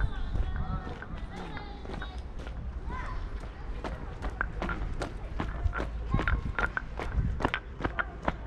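Footsteps of a person walking on wet asphalt: a run of short, even steps that grow sharper and more distinct about halfway through.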